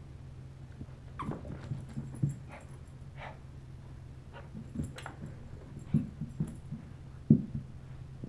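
Small dog making a string of short vocal sounds, several brief ones scattered over a few seconds with the loudest near the end, as it tries to get another dog to play.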